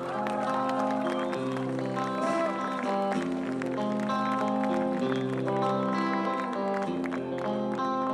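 Live band playing a song's instrumental intro: electric guitars, bass, keyboard and drums, with sustained chords that change about once a second over a steady beat.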